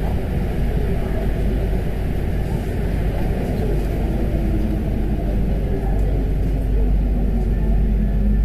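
Paris Métro MP 05 rubber-tyred train running through a tunnel, heard from on board: a steady low rumble.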